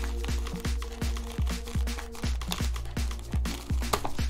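Background electronic music with a steady kick-drum beat and held synth tones.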